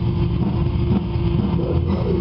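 Live metal band playing: distorted electric guitars and bass over drums, holding a sustained chord, with a dense, muddy low end.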